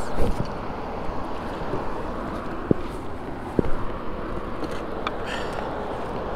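Steady rushing noise of wind and water around a small boat, with two short low knocks a little past the middle.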